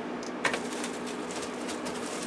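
Faint handling noises of a circuit board and plastic bubble wrap on a bench: one sharp click about half a second in, then light scattered ticks and rustling, over a low steady hum.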